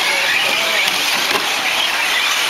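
Radio-controlled 4WD short course trucks driving on a dirt track, their motors giving a high whine that rises and falls as they speed up and slow down.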